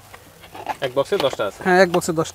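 A man's voice talking, starting about half a second in and loudest near the end.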